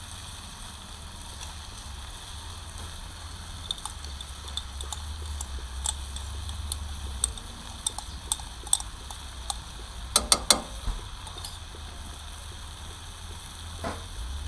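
Wood fire crackling under a frying pan: scattered sharp pops, with a quick run of three louder ones about ten seconds in, over a low steady rumble.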